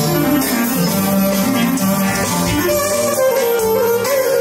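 Live Albanian wedding dance music for a valle line dance, with a clarinet and an electronic keyboard playing a bending, ornamented melody over a steady backing.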